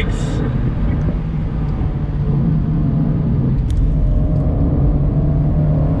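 The 1.4-litre turbocharged four-cylinder of a Fiat 124 Spider Abarth running at road speed, heard from the open cockpit over wind and road noise. The engine note is steady, with a brief dip a little past halfway.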